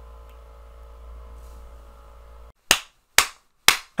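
A faint steady hum that cuts out to dead silence, then three sharp, evenly spaced percussive hits about half a second apart, each dying away quickly: an edited-in transition sound effect.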